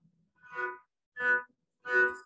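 Small upright bowed fiddle (a kamancha) sounding three short bow strokes, each a single held note with bright overtones, about two thirds of a second apart; the first is softer than the other two.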